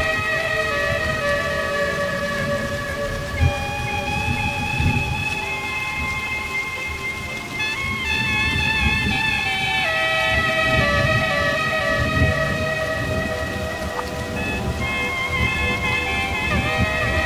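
Rain with rolling thunder, and layered woodwind notes held long over it. The chord shifts to new notes every few seconds, and the low thunder rumble swells around the middle and again a little later.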